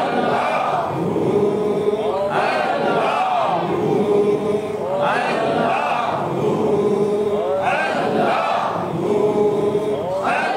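Sufi zikr chant: voices repeating one short devotional phrase over and over in a steady cycle, about once every two and a half seconds.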